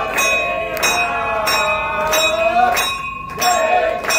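A temple bell rung in steady strokes, about three every two seconds, its ringing sustained between strokes, during a Hindu puja. Voices sing along. The bell pauses briefly near the end and then resumes.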